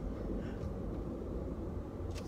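Steady low rumble of a car's road and engine noise heard inside the cabin while driving slowly.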